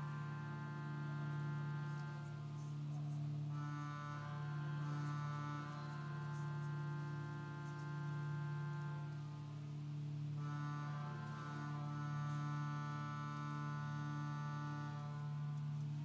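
Organ playing slow, sustained chords over a low note held throughout, the chord changing twice, each held for about six seconds.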